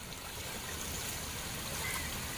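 Shallow sea water washing steadily over rocks and around a wading fisherman's legs.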